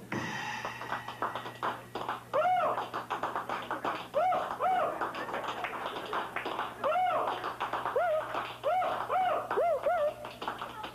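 Acoustic guitar being handled and tapped: many small knocks and clicks, with short pitched notes that bend up and fall back, coming more often near the end.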